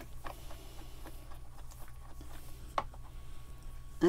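Faint scattered taps and small clicks of a paintbrush being cleaned, with one sharper click a little under three seconds in, over a steady low hum.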